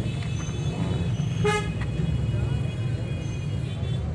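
A vehicle horn gives one short toot about a second and a half in, over a steady low rumble.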